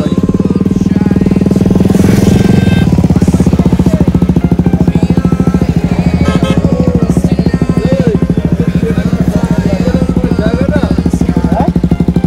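A motorcycle engine running loudly at a steady pitch, with a rapid even pulse to its low drone.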